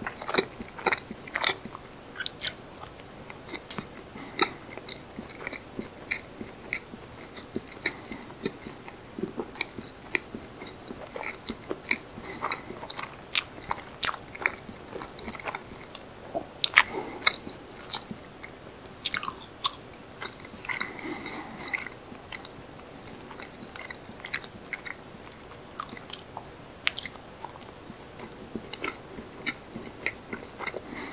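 Close-miked chewing of soft, naturally fermented rice cakes (janggiji-tteok) filled with sweet red bean paste: wet, sticky mouth sounds with sharp clicks scattered all through.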